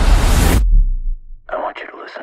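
Loud, dense noise that cuts off suddenly about half a second in, leaving a low rumble that dies away, then a brief whisper near the end.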